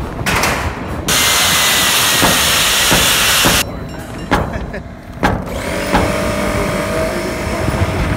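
A loud, even hiss that cuts in and out abruptly and lasts about two and a half seconds, followed by a few sharp knocks.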